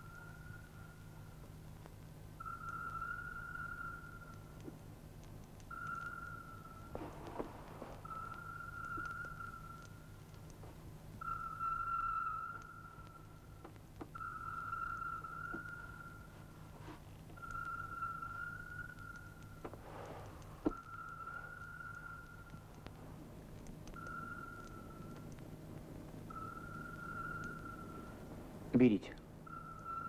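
A high whistling tone at one unchanging pitch, each note held for a second or two and repeated about a dozen times with short gaps, over a low steady hum.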